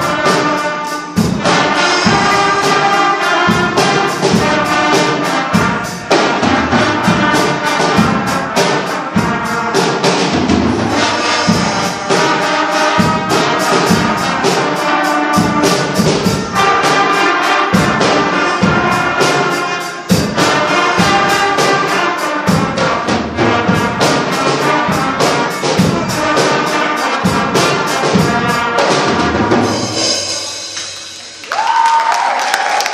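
Student concert band playing a piece that features the trumpet section, with brass to the fore and drums keeping a steady beat.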